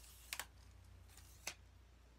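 Two short sharp clicks about a second apart from the sections of a telescoping tripod stand being locked, over a faint low hum.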